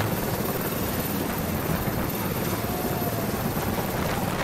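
Military transport helicopter hovering, its rotor and turbine noise steady, with a rope hanging down for troops to descend.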